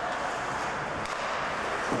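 Ice hockey rink during play: a steady hiss of skates on the ice and the ambience of the arena, with one sharp clack about a second in.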